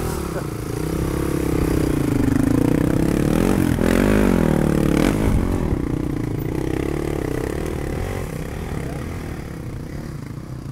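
Dirt bike engine idling, revved up and back down about four to five seconds in.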